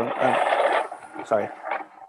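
Rubbing and rasping handling noise on a microphone as the video-call device is picked up and turned. It is loud for about the first second, then drops under a few spoken words.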